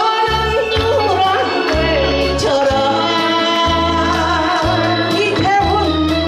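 A woman singing a Korean trot song through a microphone, her voice wavering with vibrato, over amplified accompaniment whose bass moves in held notes about once a second.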